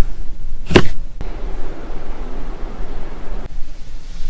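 A single sharp click about three-quarters of a second in, as a seat's fabric pull-strap release is worked, then a couple of seconds of soft rustling as a hand moves over the seat upholstery.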